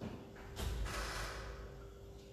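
A board being wiped with an eraser: a rubbing, swishing noise that starts about half a second in and lasts for over a second.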